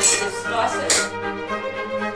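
A kitchen knife cutting through a potato against the board, a few sharp strokes in the first second. About a second in, background music with held notes comes in.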